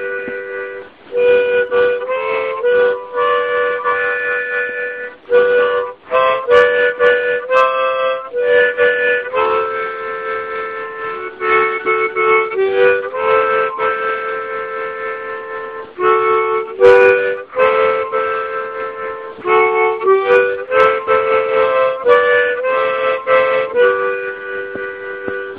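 Solo harmonica improvisation: held notes and chords, often several notes sounding together, in phrases with brief breaks between them.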